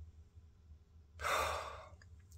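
A man's single heavy breath, a sigh, starting sharply a little over a second in and fading out within about a second, over a faint low steady hum.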